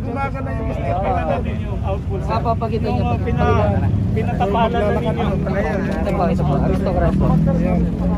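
People talking in conversation, over a steady low engine hum.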